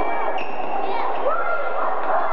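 A basketball bouncing on the gym floor with high sneaker squeaks, over a crowd of indistinct voices in the hall.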